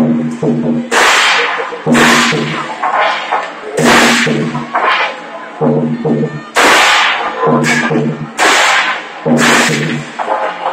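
Hand cymbals clashed in unison by a dancing troupe, a loud ringing crash roughly once a second, with a low steady tone sounding between the crashes.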